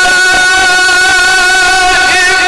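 A man's voice holding one long, steady note in melodic Quran recitation (tajwid), sung at full voice into a microphone.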